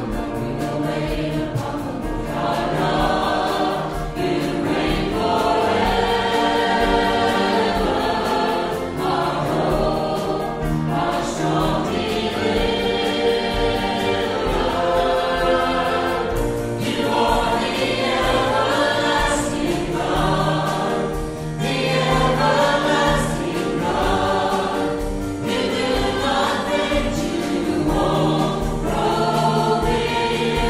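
Many voices singing a gospel hymn together with music behind them, steady and full throughout.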